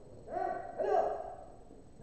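A man's drawn-out shout, one held call of about a second that swells and fades without breaking into words.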